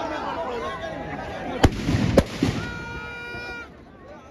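Firecrackers going off in a burning Ravana effigy: two loud, sharp bangs about half a second apart near the middle, then a smaller pop, over crowd voices.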